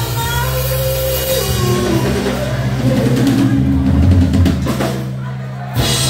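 Live rock band playing amplified electric guitars, bass and drum kit over steady low notes. The sound thins about five seconds in, then a last loud hit comes near the end as the song closes.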